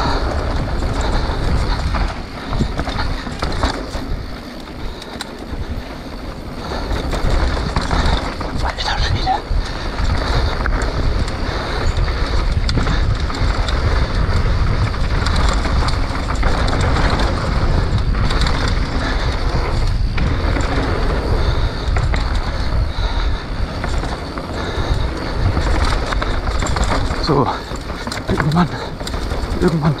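Mountain bike riding on a dirt trail, heard through an on-board action camera: wind buffeting the microphone, tyres rolling over dirt and the bike rattling, with a quieter stretch around five seconds in.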